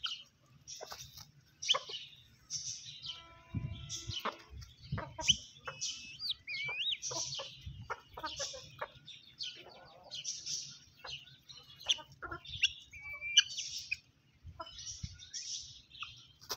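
Hens and a rooster clucking as they peck at the ground, with short high chirps and clicks throughout and one longer held call about three seconds in.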